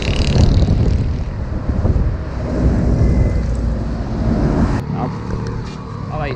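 Wind buffeting the microphone and road rumble from riding in the open back of a moving truck, a loud, steady low noise that cuts off sharply near the end.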